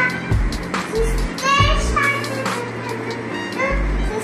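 A battery toy guitar playing an electronic tune, with a steady beat and a bass line that changes note every half second or so, and a young child's voice over it.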